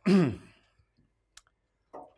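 A man's short voiced sigh, falling in pitch, in the first half second, followed by quiet and a single faint click about a second and a half in.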